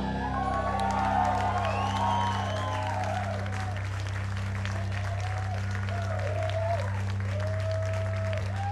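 Audience applauding and cheering with whoops as a piece ends, over a steady low hum from the stage amplification.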